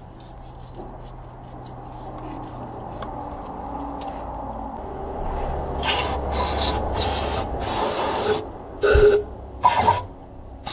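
Aerosol spray can with a straw nozzle fired in about six short hissing bursts in the second half, cleaning leaked oil off the engine's timing chain cover. Before that there is a quieter rubbing sound.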